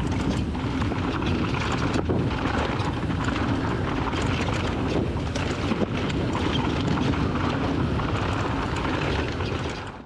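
Raw action-camera audio of a mountain bike riding down a rocky dirt trail: a steady rush of tyre noise over loose dirt and stones, with constant small rattles and knocks from the bike. There is a brief break about two seconds in.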